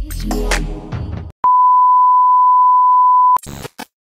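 Electronic intro music with heavy bass hits cuts out about a second in. A single steady high beep tone then holds for about two seconds and stops abruptly, followed by a couple of short glitchy blips.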